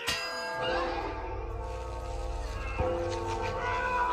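A large church bell struck with a clang, its many tones ringing on and dying slowly, with music underneath; a second, smaller strike comes near three seconds in.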